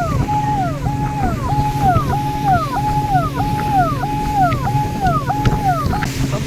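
Speedboat engine droning steadily beneath a loud repeating tone that holds its pitch briefly and then drops sharply, about one and a half times a second.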